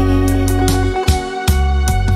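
Live band playing an instrumental passage of a slow Vietnamese ballad: sustained chords over a held bass, with several drum and cymbal strikes and no singing.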